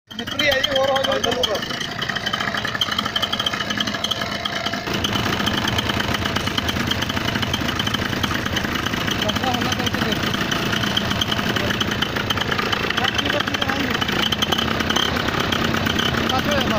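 Paramotor trike's engine and propeller running steadily behind the seats, getting louder about five seconds in.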